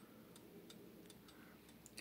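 Hampton crystal regulator mantel clock's German pendulum movement ticking faintly and evenly.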